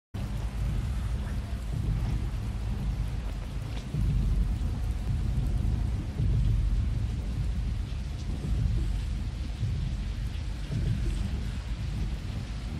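Heavy rain falling, under a deep rumble of thunder that swells about four seconds in and again about six seconds in.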